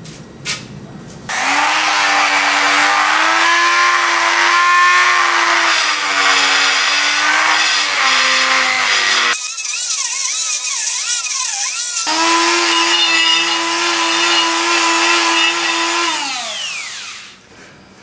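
Handheld rotary tool (Dremel-type) with a grinding stone, running at high speed against the end of a chrome handlebar tube. It starts about a second in, and its pitch sags and wavers as the bit bites the metal. A stretch in the middle turns into a high, wavering squeal. Near the end the tool winds down, its pitch falling away.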